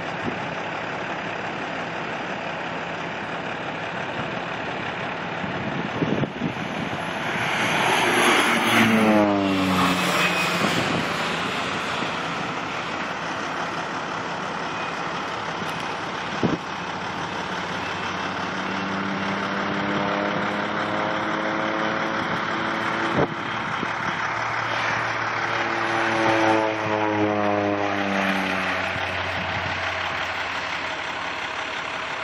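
Air Tractor AT-502 crop-spraying turboprop flying past twice, each pass swelling and then falling in pitch as the plane goes by. A steady low rumble runs underneath, with a few sharp clicks.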